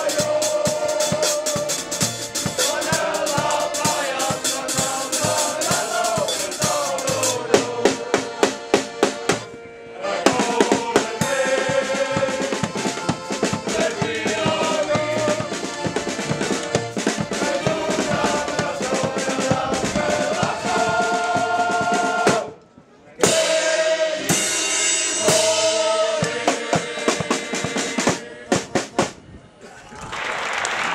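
Male shanty choir singing a sea shanty in unison, backed by a drum kit and accordion, with strong snare and bass-drum strokes. The music breaks off briefly about two-thirds through, and the song finishes near the end.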